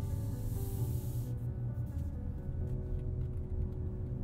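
Soft music playing through the car's 10-speaker Bose sound system, heard inside the cabin, with sustained tones over low bass. A high hiss runs through about the first second.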